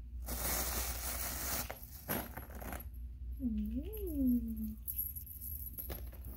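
Clear plastic bag rustling as it is pulled open, then a gold-coloured costume chain clinking as it is lifted out near the end. Midway there is a short pitched sound that rises and falls once.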